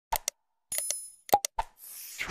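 Sound effects for an animated like-subscribe-bell graphic: sharp mouse clicks, a short metallic bell ring a little before the middle, more clicks, then a whoosh near the end as the graphic slides away.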